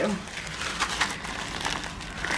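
Clear plastic bags full of crystal rhinestones crinkling irregularly as they are handled and lifted.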